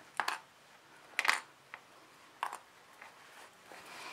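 A few short, soft handling noises: fabric being shifted on a cutting mat and small plastic sewing clips set down with light clicks, spaced out over the first few seconds, then a faint rustle near the end.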